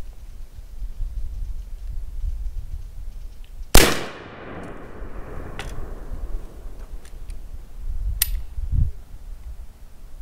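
An 1842 Springfield .69-calibre percussion smoothbore musket firing a single shot about four seconds in, on an 80-grain black-powder charge behind a patched round ball. The report rings out and dies away over the next second or so.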